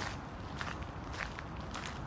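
Footsteps crunching on a wet gravel path at a steady walking pace, about two steps a second, over a low steady outdoor rumble.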